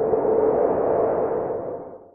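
Logo sting sound effect: a whooshing wash with a steady hum-like tone in it, fading out near the end.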